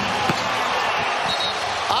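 Steady basketball-arena crowd noise with faint voices in it, and one brief thud about a third of a second in.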